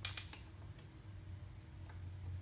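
A few light clicks of a hand tool working the ski mount's bolts: a quick cluster at the start, then two faint single clicks, over a steady low hum.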